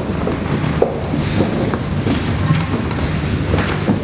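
Steady low rumble on the microphone, with scattered soft knocks and shuffling footsteps on a stone floor as a reader walks up to the lectern.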